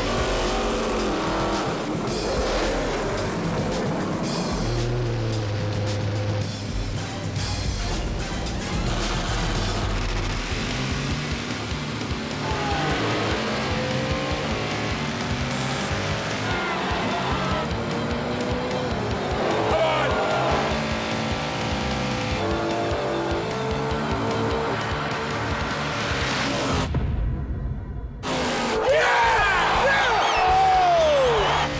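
Drag-race cars doing burnouts and making a run, engines revving and tyres spinning, mixed under loud background music.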